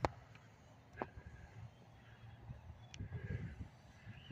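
Faint outdoor ambience: low, uneven wind rumble on the microphone, with a few light clicks.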